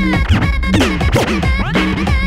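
Vinyl scratching on Technics turntables in a DJ battle routine: quick back-and-forth scratches, rising and falling in pitch, cut over a looped beat that drops back in near the end.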